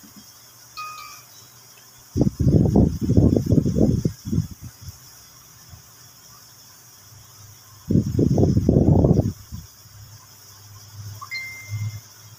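Knife chopping raw fish on a plastic cutting board: two bursts of quick, dull strokes, each about two seconds long, the first about two seconds in and the second near eight seconds in.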